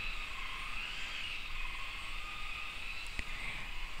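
Faint steady background noise with a thin, wavering high-pitched tone running through it, and a single soft click about three seconds in.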